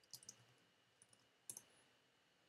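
A few faint, sharp computer keyboard key clicks in small clusters as a short bit of text is typed.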